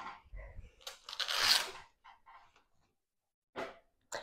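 Velcro strap of a Total Gym ankle cuff being pulled open: one tear lasting under a second, about a second in, with a soft low bump of handling just before it.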